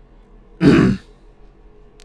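A man clears his throat once, briefly, over a faint steady hum.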